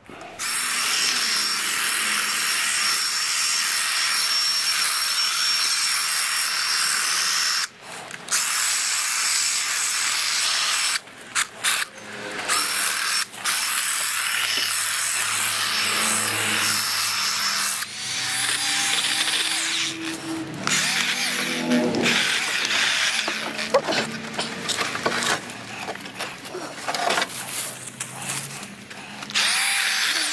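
Milwaukee M12 cordless hedge trimmer running in long bursts, its blades cutting through shrub branches. It stops briefly several times, and the running becomes more uneven in the second half.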